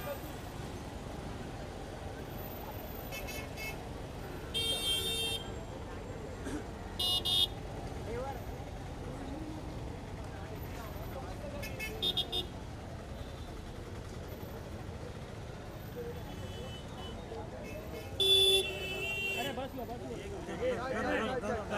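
Vehicle horns honking in short blasts about six times, the longest and loudest near the end, over steady street traffic noise and background voices.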